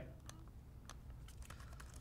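Faint typing on a laptop keyboard: a handful of light, scattered keystrokes entering a short search word.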